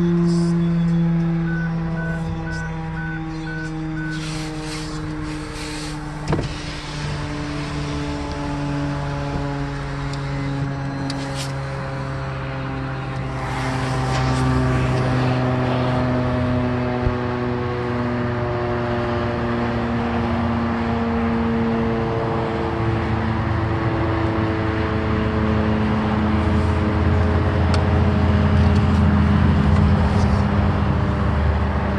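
Federal STH-10 fire siren sounding, a steady multi-toned wail whose pitch slowly drifts downward. Car engine and road rumble sit underneath, growing louder in the second half, and a single sharp thump comes about six seconds in.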